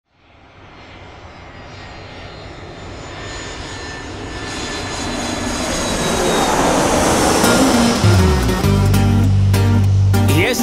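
Jet airliner engine noise, a rushing sound with a thin high whine, growing steadily louder from silence. About eight seconds in, music enters with deep bass notes, then a beat.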